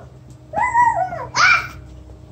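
Young child babbling: two short, high, wordless vocal sounds, the second a bit louder.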